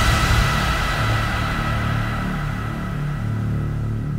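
Electronic dance music easing into a breakdown after a dubstep drop: held low synth notes under a bright high wash that slowly fades away.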